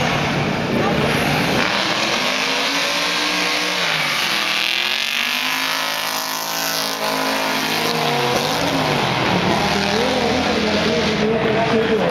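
A third-generation Chevrolet Camaro and a turbocharged Mitsubishi Lancer Evolution launching side by side in a drag race, their engines rising in pitch under full acceleration. The engine note drops in pitch as the cars go past, about six to eight seconds in.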